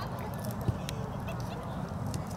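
Wind rumbling on the microphone at an outdoor soccer game, with one sharp thud of a ball being kicked about two thirds of a second in. Faint distant calls sound in the background.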